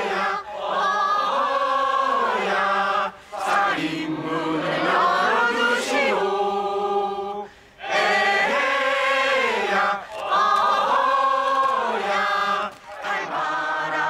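A crowd of men and women singing a slow song together in long held phrases, with three short breaks for breath.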